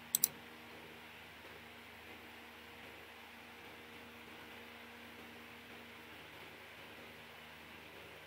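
Two quick sharp clicks of computer input at the very start, as a URL is pasted into the code editor, followed by a steady faint hiss and low hum of room and microphone noise.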